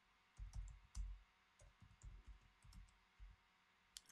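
Faint typing on a computer keyboard: a scattering of light, irregular key clicks.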